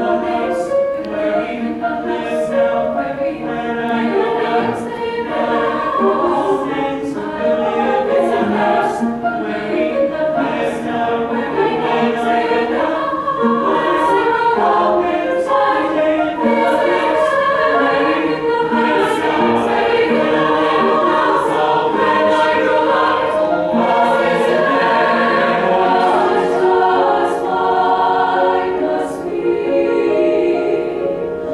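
A large mixed-voice choir singing a piece in several parts, full and sustained, with the words carried by all the voices together.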